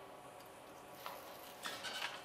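Faint rustling and crackling of the plastic release liner being peeled off sticky-back plate-mounting tape on a flexo plate cylinder, picking up about a second in and a little louder toward the end.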